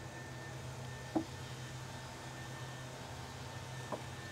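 A quiet lull with a steady low background hum, broken by one brief short sound about a second in and a faint click just before the end.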